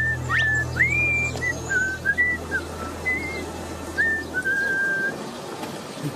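A cheerful tune whistled by mouth: short held notes with quick upward slides between them, over a low sustained musical drone. Both stop about five seconds in.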